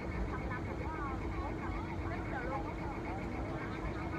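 A boat's engine running steadily: a low rumble under a constant hum, with indistinct voices over it.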